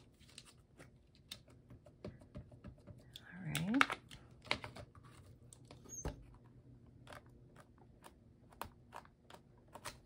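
Light, irregular tapping and clicking as an ink pad is dabbed onto a fern-leaf stamp held in a stamping tool, inking it for a second layer of stamping.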